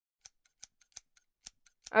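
Barber's scissors snipping hair: a quick series of light snips, unevenly spaced.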